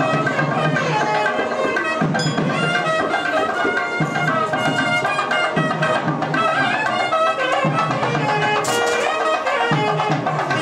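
Traditional South Indian temple music: a wind instrument plays a held, ornamented melody over steady drumming.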